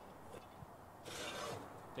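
A short scraping hiss, about a second in, as a cast-iron pan is drawn out across the floor of a pizza oven; otherwise faint background.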